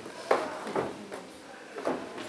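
Boxes of teaching models being handled and put away: a few separate knocks and scrapes.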